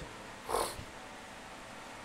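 A single short, breathy puff of air, like a nasal snort or sniff, about half a second in, over faint steady room noise.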